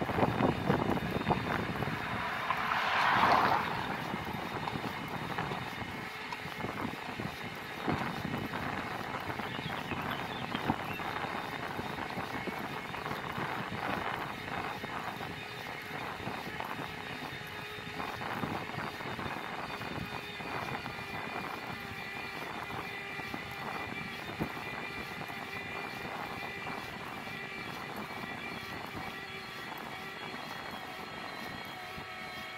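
Wind rushing and buffeting over the microphone while riding, with road and tyre noise, louder for a moment about three seconds in, and a faint steady high whine later on.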